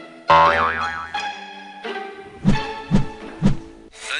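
Comic cartoon 'boing' sound effect with a wobbling pitch, coming in suddenly over light music, then three deep thumps half a second apart.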